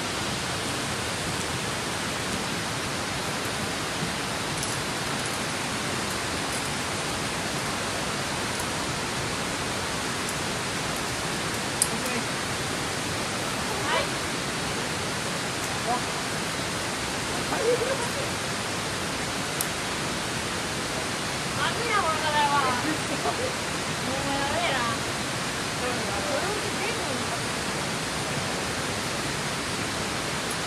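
Steady rushing of river water, an even hiss throughout, with a few short voices and a laugh partway through and a couple of sharp clicks.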